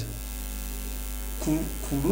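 Steady low electrical mains hum on the audio during a pause in a man's speech; his voice comes back in near the end.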